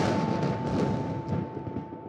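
A dramatic music sting: one loud drum hit at the start that rings and fades away, with a single steady high note held beneath it.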